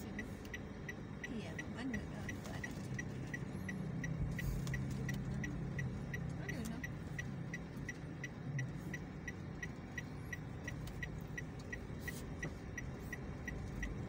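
A car's turn-signal indicator clicking steadily, about three clicks a second, over the low hum of the car running, heard inside the cabin.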